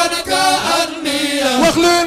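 A group of men chanting an Arabic religious poem, unaccompanied, with sustained, wavering sung notes.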